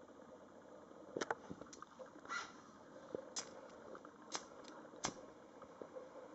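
Quiet room with about half a dozen faint, sharp clicks and ticks scattered through it, from small handling or burning sounds close to the microphone.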